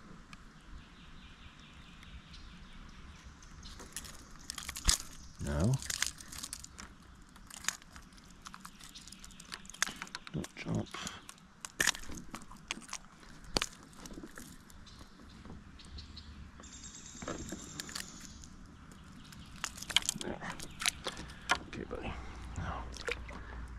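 Irregular clicks, knocks and rustles of hands working long-nose pliers to unhook a small bass, with fishing gear bumping on the plastic kayak hull.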